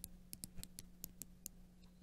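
Rotating dive bezel of an Arlanch Submariner-style watch clicking as it is turned by hand: about eight faint, sharp clicks spread unevenly over the first second and a half. The bezel is stiff and takes force to turn, and its click is a satisfying one.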